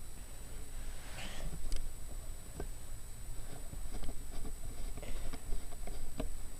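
Faint rustling and scattered light clicks over a low rumble of handheld-camera handling, with a brief scuffing sound about a second in.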